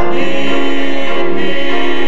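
Gospel quartet of two men and two women singing in harmony into microphones, holding sustained notes.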